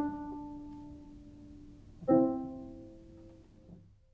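Sparse, soft piano music: a note struck at the start and a chord about two seconds in, each left to ring out and decay, fading almost to silence near the end.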